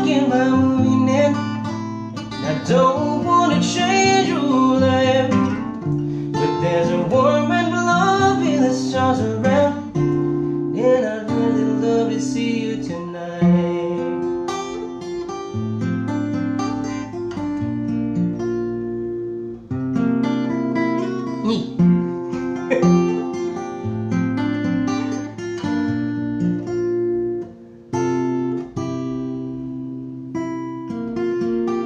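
Taylor acoustic guitar with a capo, strummed and picked, with a man singing over it for roughly the first half; after that the guitar plays on alone.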